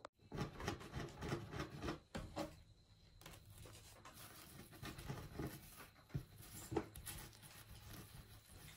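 Faint rustling and scattered light taps of a beaded string necklace being dragged and handled across a tabletop.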